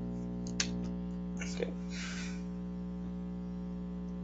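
Steady electrical hum with a stack of evenly spaced overtones on the call's audio line: the persistent background noise the participants complain of, which one suspects is coming from the system. A sharp click comes about half a second in, and a short hiss follows in the middle.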